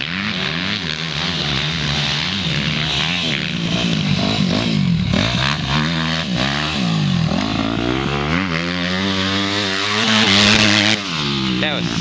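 Dirt bike engines revving up and down as motocross bikes ride a dirt track, the pitch repeatedly climbing and dropping through throttle changes and shifts. Loudest about ten seconds in.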